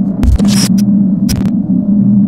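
Electronic end-card sound effects: a loud, steady low hum with a few short whooshes over it, one carrying a brief high ping about half a second in.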